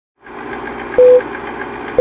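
Film-leader countdown sound effect: a rapid, even ticking, about eight ticks a second, over hiss, like an old film projector running, with a short, loud beep about a second in marking one number of the countdown.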